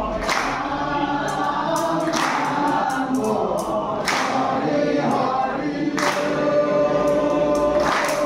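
A group of men chanting devotional nam in unison, with long held notes, and a sharp strike about every two seconds marking the beat.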